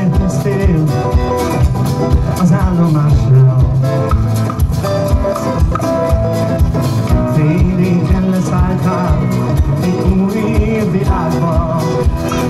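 Live band music from the stage: acoustic and electric guitars, keyboard and drums playing an upbeat song, with a steady kick-drum beat of about three strokes a second.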